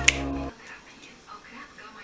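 A single finger snap just after the start, over a low steady hum that cuts off suddenly about half a second in, leaving faint room sound.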